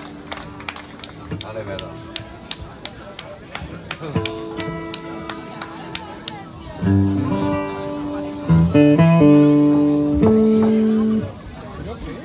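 Acoustic guitar playing held notes and then louder strummed chords from about seven to eleven seconds in, over a light steady tick about three times a second in the first half.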